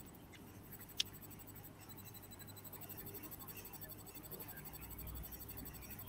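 Faint hiss and low hum of an open video-call audio line, with a single sharp click about a second in.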